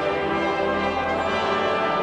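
Church music in slow, sustained chords, with brass instruments prominent.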